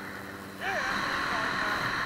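Steady rush of wind with helicopter noise beneath it, picked up by a camera on a line worker flying under a helicopter on a long line. The rush steps up and grows louder about half a second in.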